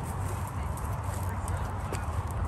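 Footsteps through dry grass and brush, irregular light crunches over a steady low rumble.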